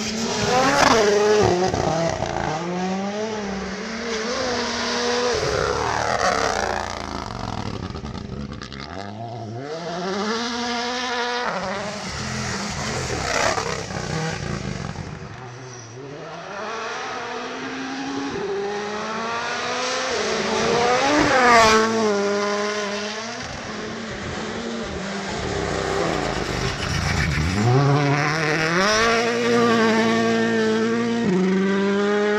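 Toyota GR Yaris Rally1 car's turbocharged engine revving hard on gravel, the pitch repeatedly climbing and dropping with gear changes and lifts over several passes, with gravel spraying from the tyres. The loudest moment comes about two-thirds of the way through, as the car goes by and the pitch falls away.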